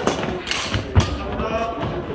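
Badminton rally on a wooden gym floor: a few sharp strikes of racket on shuttlecock and thudding footfalls, the loudest hit about a second in, echoing in a large hall.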